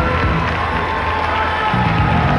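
Audience cheering and shouting over the pageant's band music.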